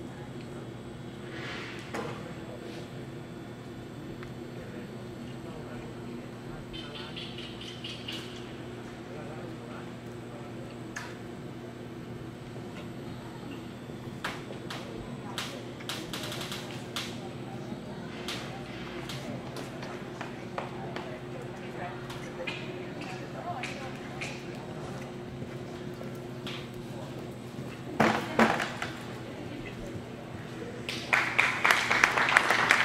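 Ambience of a large indoor hall: a steady low hum under faint, indistinct background voices, with scattered sharp clicks and knocks and a louder burst near the end.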